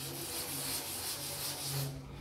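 A chalkboard duster rubbing back and forth over a blackboard, wiping off a chalk drawing: a steady dry scraping.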